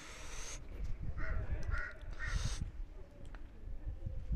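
A crow cawing three times, about half a second apart, over low rumbling and two short bursts of hiss.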